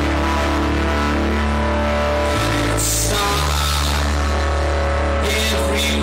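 Live rock band playing an instrumental passage: electric guitar and keyboard over held bass notes, with drums.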